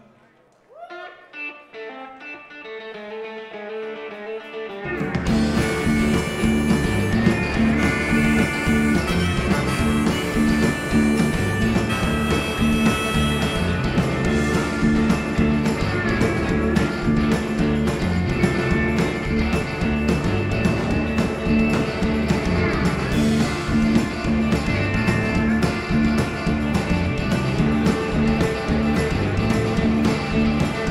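Live rock band starting a song: a few quiet notes for the first few seconds, then the full band with drums, bass and electric guitars comes in loud about five seconds in and plays on.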